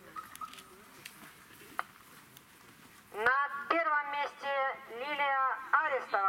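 Low background with a few faint clicks for about three seconds, then an announcer's voice, loud and clear, reading out the next placing.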